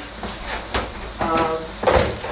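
Raw ground beef and diced onion sizzling and hissing in a hot frying pan, the meat just added as one block.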